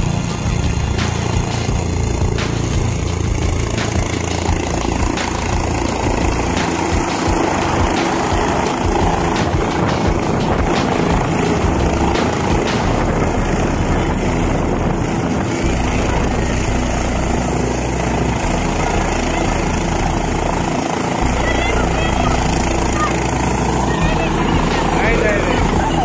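A helicopter's rotor and engine running loud and steady as it comes in to land and then sits on the pad with its rotor still turning, with a crowd's voices over it.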